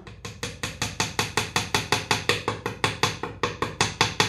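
Rapid, even tapping, about seven taps a second, as toothpick pegs are driven home with a chisel into the rim of a bentwood box lid.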